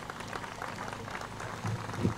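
Light, scattered clapping from a crowd: many small, irregular claps.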